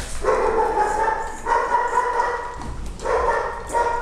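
A dog giving long, steady, drawn-out whining calls, four in a row: two of about a second each, then two shorter ones near the end.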